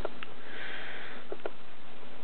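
A man sniffing: one breath drawn in through the nose, lasting about a second, with a few faint clicks around it.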